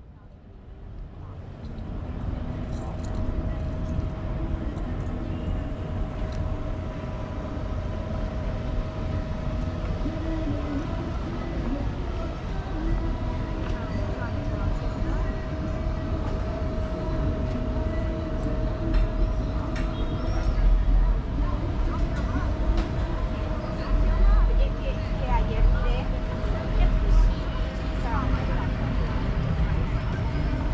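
Outdoor promenade ambience: passers-by talking in the background over a steady hum, with low rumbling gusts near the end.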